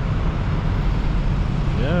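Steady low rumble of road traffic, with no separate events standing out.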